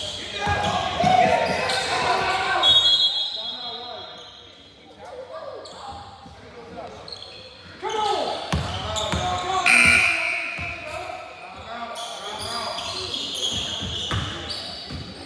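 Basketball game in a gymnasium: untranscribed shouts from players and spectators, and a ball bouncing on the wooden court, in a large echoing hall. The sound is busiest for the first three seconds and again from about eight seconds in, with a quieter lull between.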